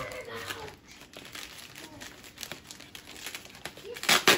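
Plastic bubble wrap around a potted plant crinkling and rustling as it is handled, with irregular small crackles.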